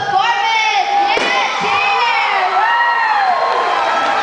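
Loud cheering and shouting from a crowd of young voices, with long high-pitched screams that rise and fall about once a second.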